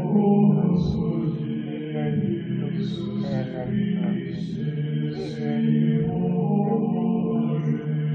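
Slow devotional chant sung with long held notes.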